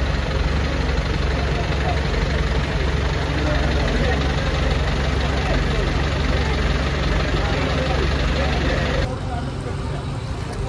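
A vehicle engine idling steadily close by, with people talking in the background. It breaks off suddenly about nine seconds in, leaving quieter outdoor sound and voices.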